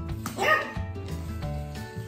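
A puppy gives one short, high bark about half a second in, over background music with a steady bass line.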